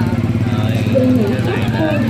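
A small engine running steadily with a low, pulsing hum, under voices and chatter from a crowd.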